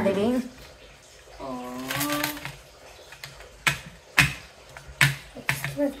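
Plastic board-game spinner wheel clicking as it turns: a handful of separate sharp clicks, roughly half a second apart, in the second half.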